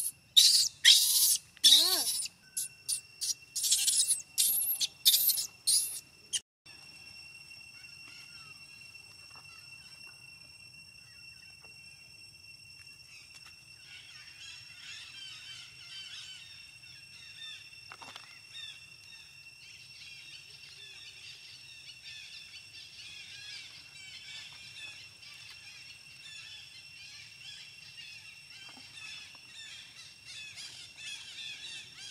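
A baby macaque screaming in a rapid series of shrill cries for about six seconds, crying in fright after an older monkey has pulled candy from her mouth. The cries stop abruptly, leaving a quieter outdoor background with a steady high-pitched whine and scattered chirps.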